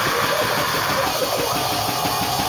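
Loud live heavy rock band: rapid, dense drumming on a drum kit with distorted guitar and shouted vocals.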